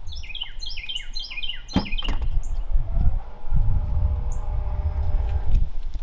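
Small birds chirping in a quick run of falling high notes, with two more chirps later. A single sharp click comes just under two seconds in, and a low rumble with a faint steady hum fills the second half.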